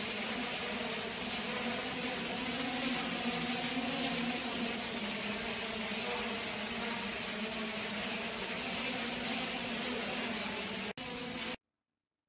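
Quadrotor drone hovering in front of a bank of blowing fans: a steady propeller hum under an even rushing noise. It drops out for an instant near the end, then cuts off abruptly.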